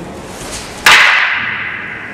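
Two long wooden staffs (bo) clashing once, a sharp crack a little under a second in as a sideways strike meets a sideways block. The crack rings on and fades over about a second.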